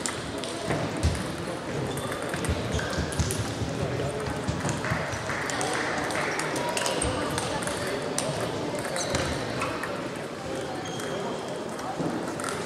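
Table tennis balls clicking irregularly off bats and tables at several tables playing at once, over indistinct chatter of voices.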